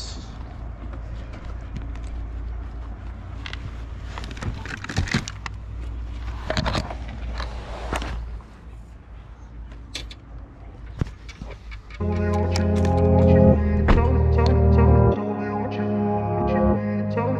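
Car door being opened and handled, with scattered clicks, knocks and rustling over a steady low rumble. Then background music starts suddenly and louder about three quarters of the way through, and it becomes the loudest sound.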